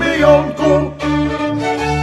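Góral-style folk band music: a sung line ends within the first second, then fiddles carry on over a regular pulsing bass.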